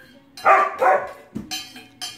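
Siberian husky giving two short barks about half a second apart, followed by a brief thump.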